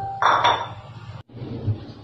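Two bright, ringing clinks, like light metal or glass being struck, about a third of a second apart near the start. A moment later the sound cuts out completely and briefly.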